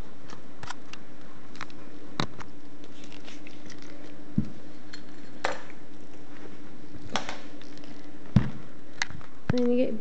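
Light clicks and taps from small plastic doll accessories (a dummy and bottle) being handled, about eight scattered through, the sharpest a little after eight seconds in, over a steady low hum.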